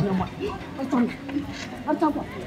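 People's voices: short, broken shouts and exclamations during a scuffle, with no clear words.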